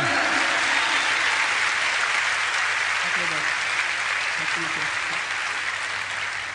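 Studio audience applauding steadily, dying down a little toward the end.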